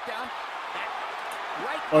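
Boxing commentary from the highlight reel being played: a man's voice talking quietly over a steady background hiss, fainter than the reactors' voices.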